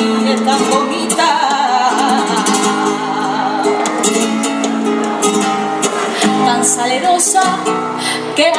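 Flamenco guitar accompanying a female flamenco singer in the cantiñas style of caracoles. Her sung line wavers through the first couple of seconds, the guitar carries on with strummed chords while she rests, and she starts singing again near the end.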